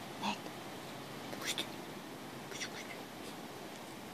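Three short, breathy puffs about a second apart over a steady background hiss.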